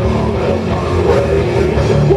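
Heavy metal band playing live and loud: electric guitars, bass guitar and drum kit together in a steady passage.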